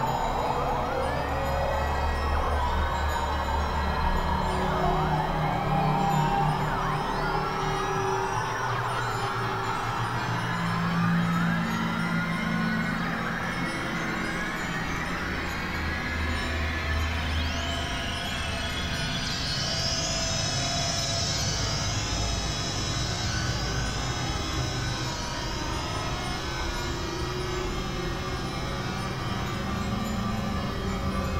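Experimental electronic drone music on Novation Supernova II and Korg microKORG XL synthesizers: many overlapping tones gliding up and down like sirens over low held notes. About two-thirds of the way in, the glides climb high and settle into a string of repeated high swoops, about one a second.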